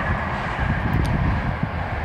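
Wind buffeting the microphone outdoors: a steady, uneven low rumble, with a faint tick about halfway.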